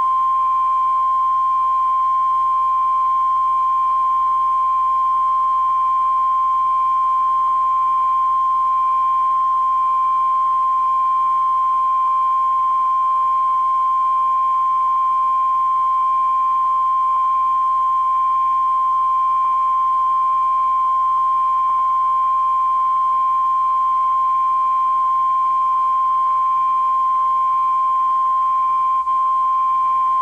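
Broadcast line-up test tone: a steady 1 kHz sine tone played with colour bars to set audio levels. It holds one unchanging pitch at a constant loud level, with a faint low hum beneath it.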